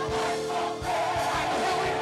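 Gospel choir singing with lead voices out front, over instrumental accompaniment with a steady low beat and a long held note.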